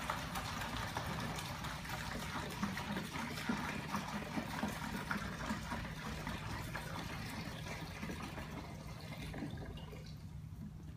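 Liquid rust remover pouring in a steady stream from a plastic jug into a plastic pail, thinning out near the end.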